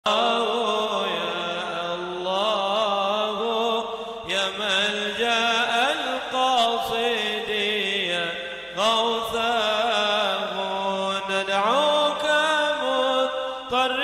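A man chanting an Arabic munajat (devotional supplication) solo into a microphone, in long, ornamented held notes with wavering pitch. He pauses briefly for breath about every three to four seconds.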